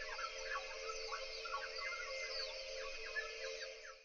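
Faint bird-like calls, short and irregular, over a steady droning tone; the sound fades out at the very end.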